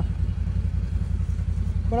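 A side-by-side utility vehicle's engine idling: a steady low rumble.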